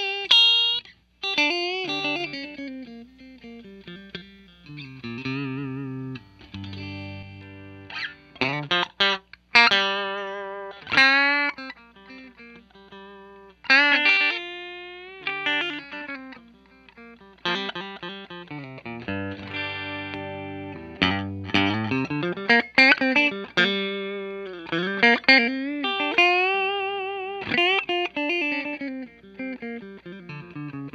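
Sandberg California DC Masterpiece Aged Tele-style electric guitar with two single-coil pickups, played through a Fender Twin Reverb amp on its clean channel. It plays single-note lines with vibrato and bends, mixed with ringing chords.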